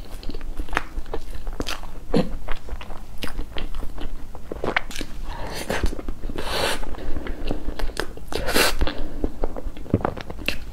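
Close-miked eating sounds of a person chewing spoonfuls of soft sponge cake with red icing: many sharp wet mouth clicks and smacks, with a few longer noisy scrapes about halfway through and near the end.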